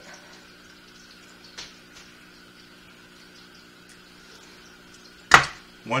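Quiet room tone: a steady low hum with a faint high whine, a small click about a second and a half in, and one sharp, loud click shortly before the end.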